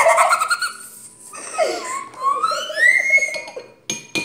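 Young girls giggling and laughing, with a high laugh that climbs in pitch in the second half.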